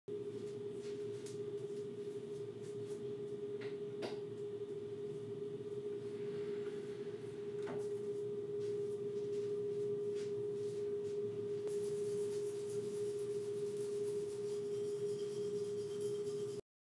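A steady, even hum holding one pitch over a low rumble, with a few faint clicks.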